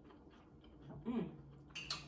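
Faint clicks of metal forks against plates, then a hummed "mmm" of approval about a second in.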